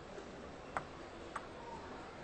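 Two sharp ticks of a table tennis ball bouncing, about half a second apart, the first louder, over a faint steady background.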